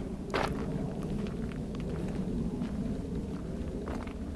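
Footsteps on a gravel path, faint scattered crunching clicks over a steady low rumble.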